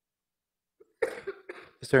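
About a second of near silence, then a man's short cough about a second in, just before speech begins.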